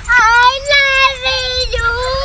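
A high-pitched female voice wailing in long, held sing-song notes, with a few short breaks between them.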